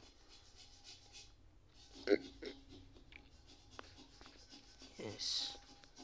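Quiet room sound with a few brief, faint snatches of a person's voice, about two seconds in and again around five seconds, one followed by a short hiss like a breath or an 'sh'.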